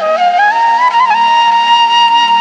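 Slow, sad flute melody in background music. It steps up to a long held note with a small ornament about a second in, over a low pulsing backing.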